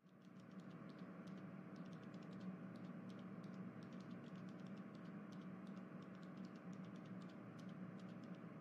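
Faint, irregular light clicks, several a second, over a low steady hum.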